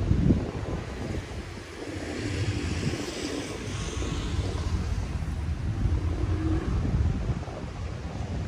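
Outdoor city ambience: a low, uneven rumble with a faint hiss above it, and a brief louder bump right at the start.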